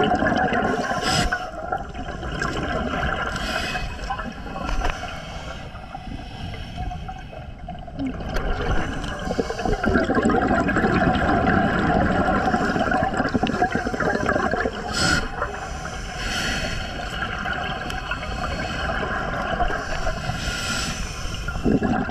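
Scuba breathing heard underwater: exhaled bubbles from a regulator gurgling and rushing past the camera in long swells, with quieter stretches between breaths.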